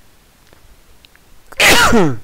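A man sneezes once, loudly, near the end: a sudden sharp burst that falls in pitch as it trails off. Before it there is only quiet room hiss.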